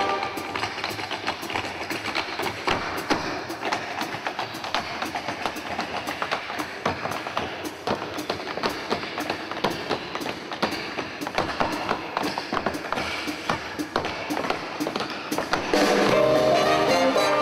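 Music driven by rapid, dense percussive taps and clicks, like wood blocks or hard-soled footwork, with no clear melody above it.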